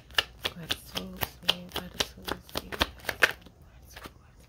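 A tarot deck being shuffled by hand: a rapid run of crisp card flicks and slaps, several a second, stopping about three and a half seconds in.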